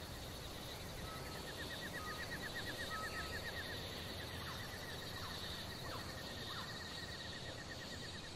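Outdoor ambience with animal calls over a steady faint hiss: a rapid run of high chirps, a few short whistles and some brief falling notes.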